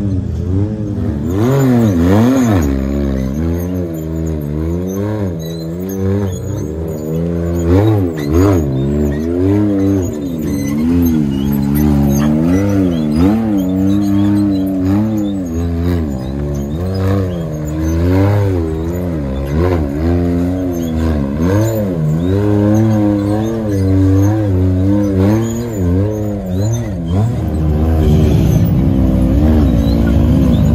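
Can-Am Maverick X3 UTV's turbocharged three-cylinder engine revving up and down over and over, about once a second, as the throttle is worked while it climbs over rocks. It gets a little louder and steadier near the end.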